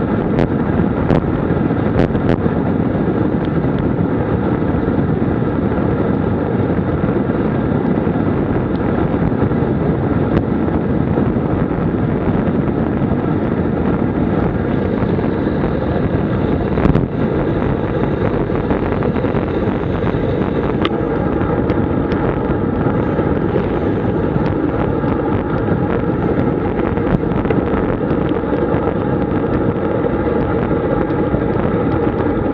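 Steady rush of wind over the microphone, mixed with tyre noise, from a road bicycle descending fast at around 70 km/h. A few sharp clicks stand out, mostly early and in the middle.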